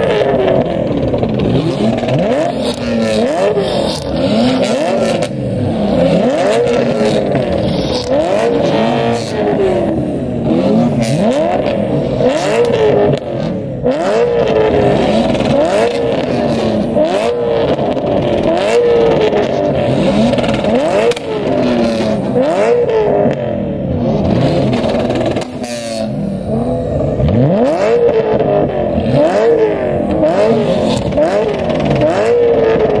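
Parked BMW M3-type performance cars revving their engines over and over. The revs climb and drop about once a second, with overlapping sweeps suggesting more than one car at a time.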